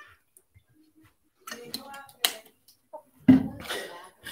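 A woman drinking from a plastic water bottle, quiet at first with a few faint mouth sounds and a click. A short, loud burst of her voice follows about three seconds in.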